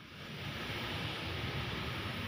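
Steady, rushing outdoor noise, wind on the phone's microphone, fading in just after the start.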